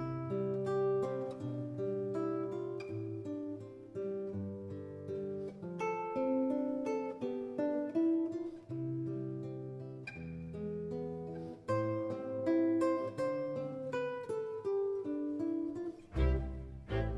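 Background music: an acoustic guitar playing picked notes and chords, a few notes a second, each ringing and fading.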